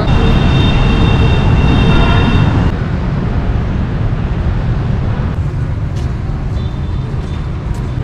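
City street traffic of motorbikes and cars, a dense low rumble with a high whine over it for the first three seconds. About three seconds in, the sound changes abruptly and drops a little in level.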